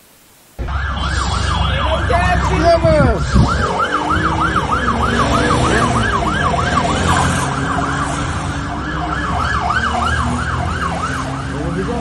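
Emergency-vehicle siren in a fast yelp, its pitch rising and falling about four times a second, over a steady low rumble. A brief quiet hiss of TV static comes before it at the very start.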